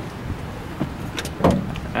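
A pickup truck door being opened, its latch giving a single sharp click about one and a half seconds in, over low steady background noise.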